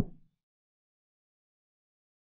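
A chess program's move sound: one short knock of a piece being set down, marking a knight move, dying away within a quarter second.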